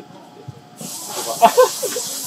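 Brief laughter, over a steady high hiss that starts abruptly just under a second in.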